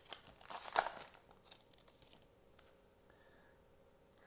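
Foil wrapper of a Panini Mosaic basketball card pack crinkling and tearing as it is opened, loudest in the first second and dying away by about a second and a half in.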